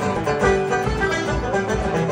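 Traditional Irish folk music played live by a duo on plucked string instruments, over a steady beat.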